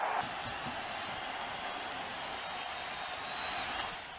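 Stadium crowd noise from a baseball broadcast: a steady, even din from the audience in the stands, with a faint high steady tone running through it until just before the end.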